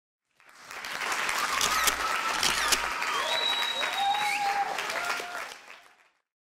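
Audience applauding, with a few voices calling out over the clapping; it fades in at the start and fades out just before the end.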